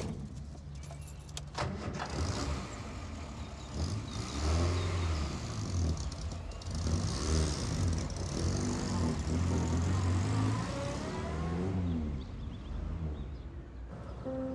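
A few knocks in the first two seconds, then a Morris Minor van's small four-cylinder petrol engine running and pulling away. Its revs rise and fall several times as it gets moving.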